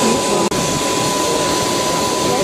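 Steady rushing noise of an aircraft's engines running on the apron, with a constant high whine, and indistinct voices beneath it. The sound cuts out for an instant about half a second in.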